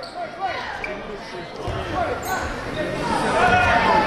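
Indoor basketball game sound on a hardwood court. A free throw goes up and misses, then players run the other way with the ball bouncing, under the chatter of spectators in the gym.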